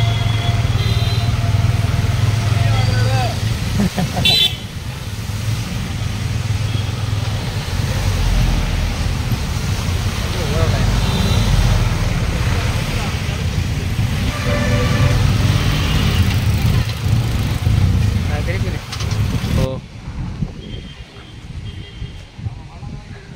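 Road traffic on a rain-wet street: a steady engine drone with road noise, and vehicle horns tooting a few times. The sound turns quieter near the end.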